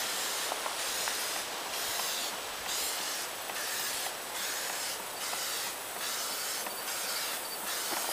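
Aerosol can of clear spray sealer spraying onto a paper map: a continuous hiss that swells and eases about once a second as the can sweeps back and forth.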